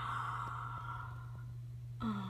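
A person's long breathy sigh, fading away over about a second and a half, with a steady low hum underneath.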